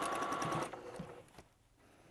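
Electric sewing machine stitching a seam through layers of cotton fabric, running with rapid needle strokes and a steady whine. It stops about two-thirds of a second in, followed by a couple of light clicks.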